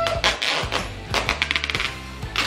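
Packing tape being pulled off its roll in short noisy strips, with a fast rattling pull about halfway through, over background music with a steady low bass.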